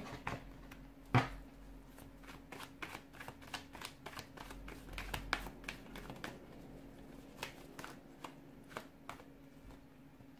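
A deck of tarot cards being shuffled by hand: a quick run of soft card clicks and slaps, with one sharper knock about a second in.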